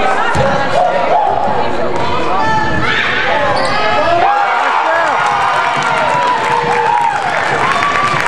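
Basketball game in a gym: the ball bouncing on the hardwood court, with spectators' and players' voices and shouts throughout.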